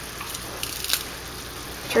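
Ground beef, onion and sweet peppers sizzling steadily in a frying pan, with a few faint clicks as small garlic cloves are squeezed through a plastic garlic press.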